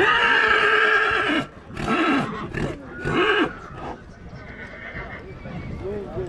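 Horse neighing: one long, loud call, then two shorter calls that rise and fall in pitch about two and three seconds in.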